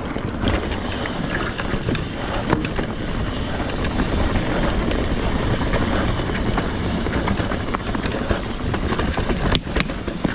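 Trek Fuel EX 7 full-suspension mountain bike riding over a dirt forest trail: a steady rumble of knobby tyres on the ground with frequent clicks and rattles from the bike. A sharp knock comes near the end.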